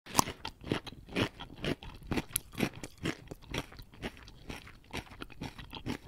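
Giant panda chewing bamboo: a steady string of sharp crunches, about two a second.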